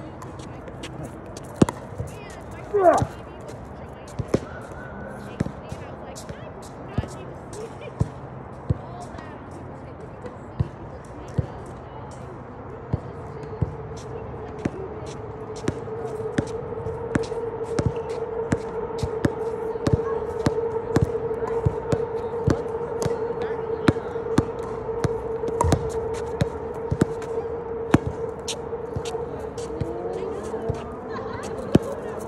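A basketball bouncing on an outdoor asphalt court, with sharp single bounces early on, then quicker, more regular bounces like dribbling in the second half. A steady hum comes in about halfway through and carries on under the bounces.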